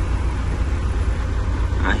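Truck engine and road noise heard from inside the cab: a steady low rumble as the truck rolls slowly along a wet street.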